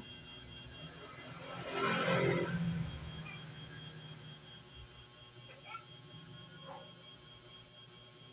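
Soft rustling of a small rolled paper raffle slip being unrolled by hand, loudest about two seconds in, with a few small crinkles later and a faint steady hum underneath.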